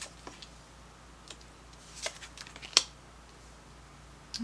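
Tarot cards being drawn from the deck and laid down on a cloth-covered table: a scatter of light clicks and taps, bunched together between about two and three seconds in, the sharpest just before three seconds.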